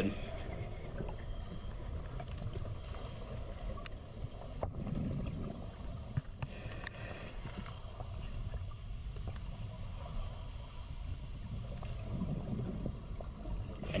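Muffled, steady low rumble of a strong spring current rushing past, heard underwater through a GoPro's waterproof housing, with a couple of faint clicks.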